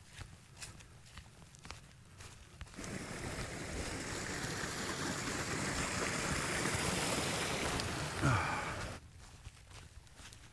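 Small moorland beck of water running over stones, a steady rush that starts suddenly a few seconds in and cuts off sharply about a second before the end. Faint footsteps on grass come before it, and near the end a brief louder sound falls in pitch.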